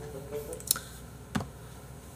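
Two sharp clicks about two-thirds of a second apart, from a computer mouse.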